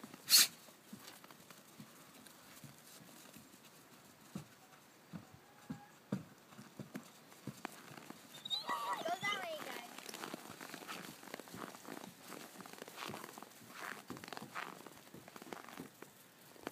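German shorthaired pointer puppies' paws pattering and crunching on packed snow, with many scattered light clicks. A sharp knock comes just after the start, and a brief high-pitched call about halfway through.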